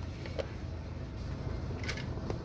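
Quiet room tone with a steady low hum and a few faint light clicks as a plastic blister-packed toy car card is handled.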